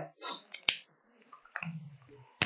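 A short hiss, then one sharp click from whiteboard markers being handled and put to the board, with a faint low murmur of voice near the end.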